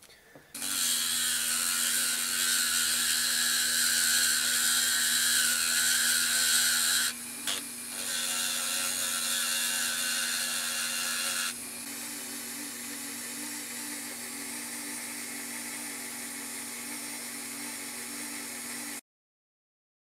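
Dremel rotary tool with a sanding drum running steadily, its hum joined by a loud gritty hiss as it grinds down a small metal cotter pin, with a short break about seven seconds in. Past the middle the grinding hiss drops away and the tool runs on more quietly, then the sound cuts off suddenly near the end.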